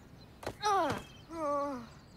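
A single thud about half a second in, then a boy's voice groaning twice, the first groan sliding down in pitch.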